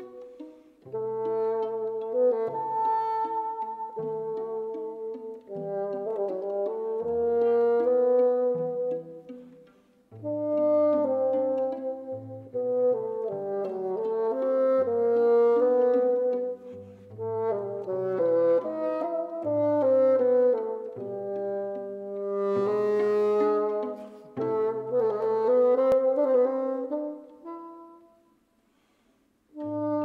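A bassoon and a string trio (violin, viola and cello) playing classical chamber music, with held melodic notes over a low line. The playing thins out briefly about ten seconds in and stops for about a second and a half near the end before it starts again.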